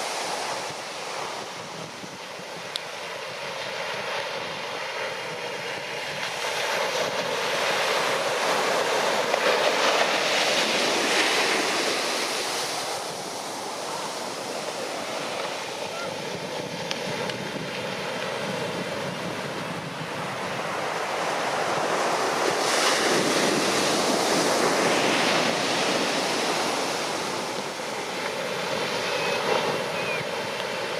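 Shorebreak surf: waves crashing and washing up the sand, a continuous rushing noise that swells twice, at about a third of the way in and again past two-thirds, as bigger waves break.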